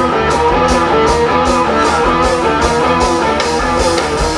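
Live rock band playing an instrumental passage without vocals: electric guitar notes stepping over a steady drum beat and bass.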